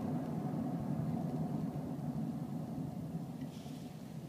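Steady low rumble of a running vehicle, easing off a little toward the end.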